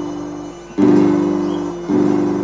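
A children's school ensemble of melodicas, recorders and acoustic guitar plays a patriotic march in slow held chords. A new chord starts sharply about a second in and another near the end.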